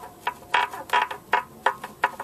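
Bonded safety glass separating from the face of a Magnavox CRT, the old clouded bonding layer letting go in a run of irregular sharp pops, about four a second. The popping sound is a creepy one.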